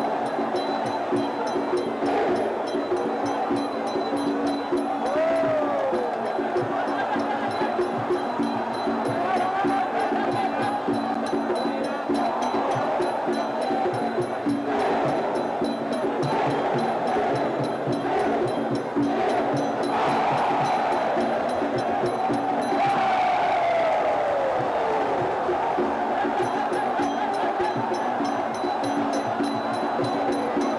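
Traditional Muay Thai ring music (sarama) playing throughout: a reedy melody that slides up and down in pitch over steady percussion, with crowd noise underneath.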